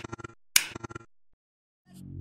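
Logo-animation sound effect: two sharp glitchy bursts about half a second apart, each breaking into a rapid stutter of clicks that quickly dies away. Near the end, music begins to fade in.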